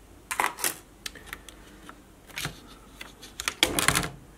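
Scattered clicks and light clatter of the opened netbook's plastic chassis and circuit boards being handled, in several short clusters, loudest near the end.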